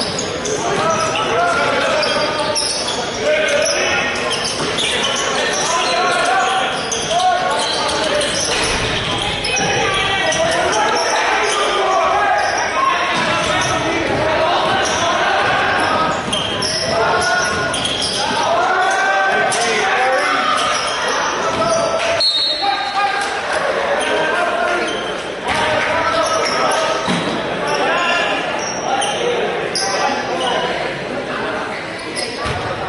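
Basketball being dribbled and bouncing on a hardwood gym floor, with players' voices calling out and echoing in the large hall. A short high-pitched whistle sounds about two-thirds of the way through.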